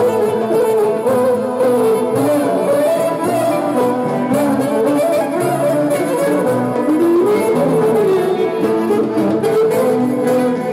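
Live Greek folk band of clarinet, violin and laouto playing a steady dance tune, with a winding melody line over the accompaniment.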